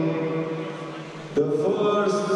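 Long held pitched notes, chant-like, ringing in a large hall, with a new set of notes starting sharply about one and a half seconds in.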